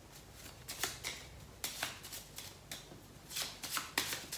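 A small deck of affirmation mini cards being shuffled by hand: soft, irregular clusters of card-edge clicks and flutters.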